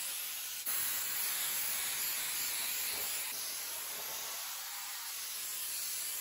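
Aerosol spray adhesive hissing from the can in one long, steady spray, with a brief break about half a second in.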